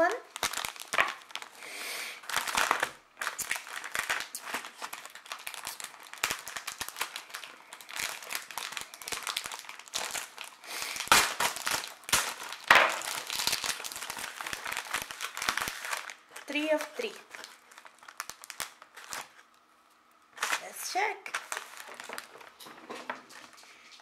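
Plastic-wrapped Peeps marshmallow candy package crinkling and crackling as it is handled and opened, in a dense run of crackles that stops about two-thirds of the way through.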